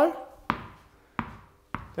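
A tennis ball at room temperature, not yet chilled in liquid nitrogen, bouncing on a hard surface: three sharp bounces a little over half a second apart, each fading quickly.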